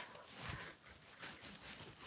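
Quiet room with a few faint, soft rustles of handling.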